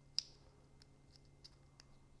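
Faint crinkles and clicks of a small fringed cardstock piece being folded and pinched between the fingers, with one sharper click just after the start and a few softer ticks after it.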